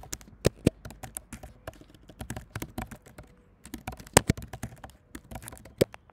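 Typing on a computer keyboard: a quick, irregular run of keystrokes, with a few louder strokes among them.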